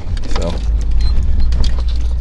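A moving car's interior road and engine noise, a steady low rumble, with light jingling and rattling clicks over it.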